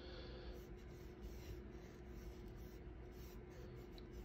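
Faint scratching of a paintbrush stroking oil paint across a gessoed panel, over a low steady hum.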